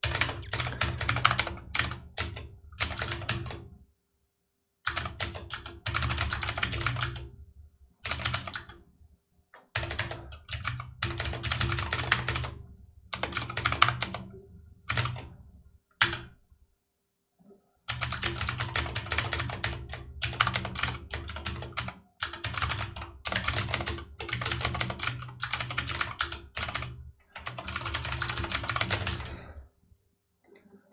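Rapid typing on a computer keyboard, in bursts of a few seconds broken by short pauses.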